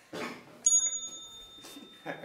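A small bell struck once, a bright ding that rings on and fades over about a second, marking a point scored.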